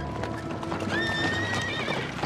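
Horses' hooves clopping on a dirt road over background music. A horse whinnies about a second in, with a high call that wavers near its end.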